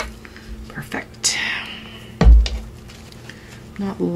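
Thin paper napkin rustling as it is handled over a craft table, with light clicks and a single low thump a little past two seconds in, the loudest sound.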